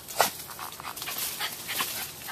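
A small dog excitedly chasing at a bush, scuffling about, with one short sharp sound about a quarter second in.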